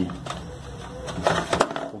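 A few light clicks and knocks in the second half as a clear plastic seed feeder is worked into place against the wire bars and wooden frame of a canary cage.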